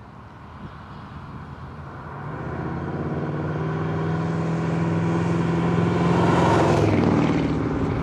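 A 1960 Chevrolet Bel Air with a 6.2-litre LS3 V8 engine driving up the road toward the listener. The engine note grows steadily louder and is loudest about six to seven seconds in, as the car draws close.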